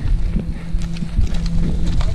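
Bicycle rolling over a gravel road: a steady low rumble of tyres on loose gravel and wind on the camera mic, with scattered small clicks and rattles from stones and the bike.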